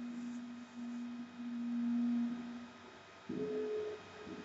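Two steady, pure held tones over old film-soundtrack hiss: a low note held for about two and a half seconds, then a shorter, higher note near the end.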